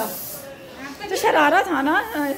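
High-pitched voices talking, with a short hiss near the start before the talking resumes about a second in.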